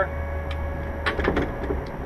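Small clicks of a Diamond Sea Glaze cabin door's latch hardware as the door is worked shut, a few faint ones about half a second in and a cluster about a second in, over a steady low hum.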